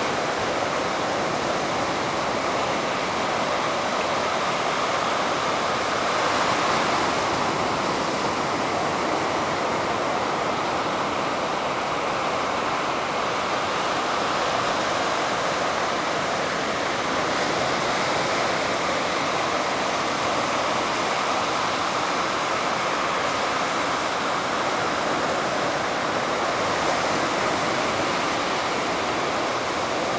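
Atlantic surf breaking and washing up a sandy beach: a steady rush of water with gentle swells as each wave comes in.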